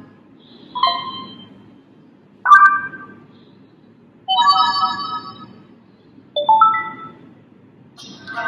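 A Sony Xperia M's speaker playing its built-in notification sounds as previews, one after another: four short, different chimes, each starting about two seconds after the last and fading out.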